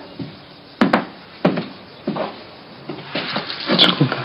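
A few sharp knocks, as of something hard striking or set down on wood, at irregular spacing, with softer thuds between them.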